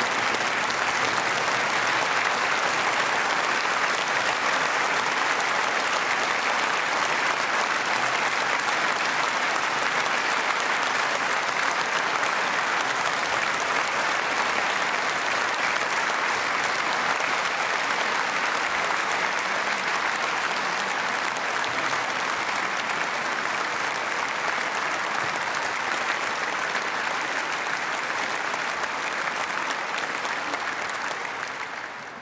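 A large audience applauding steadily and without a break: a standing ovation.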